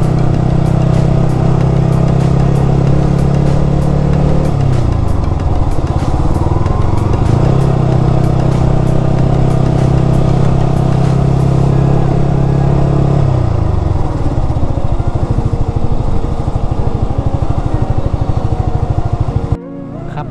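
A sport motorcycle's engine runs steadily at low speed, heard from the rider's seat. The engine note falls about four seconds in, picks up again a few seconds later, and falls once more about thirteen seconds in.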